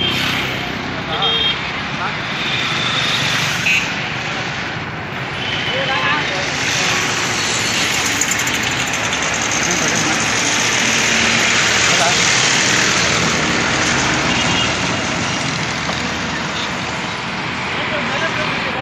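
Bus engine running with steady street noise, and scattered voices of people boarding.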